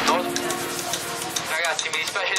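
Steady hiss of wind and sea water rushing past a moving boat, with a voice starting to speak about one and a half seconds in.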